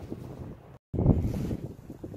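Wind rumbling on a phone microphone. The sound drops out completely for a moment just under a second in, then comes back louder before settling.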